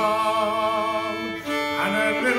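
Solo fiddle bowed while a man sings a traditional English wassail folk song: one long held note, then a step down to a new note about a second and a half in.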